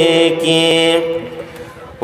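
A man's voice chanting a sermon in a melodic, singsong style, holding one long steady note that ends about a second in and then fades away.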